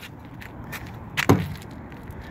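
Soft footsteps and handling noise over a faint outdoor background, with one louder short thump about a second and a quarter in.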